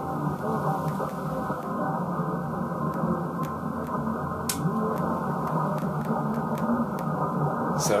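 AM broadcast-band reception through an SDR receiver: a weak station's speech, narrow and muffled by the receiver's filter, under splatter from a strong 50 kW station on the adjacent channel, with faint regular clicking over it. A sharper click about four and a half seconds in as the antenna phaser is switched out.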